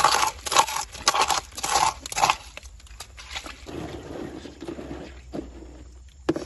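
A hand scraping and scooping wet gravel and pebbles, a run of about five gritty scrapes over the first two seconds, then quieter shifting of stones and water.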